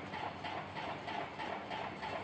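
Faint taps and strokes of a marker writing small figures on a whiteboard.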